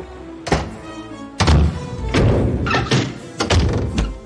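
Cartoon doors slamming shut, several heavy thuds about a second apart, over background music.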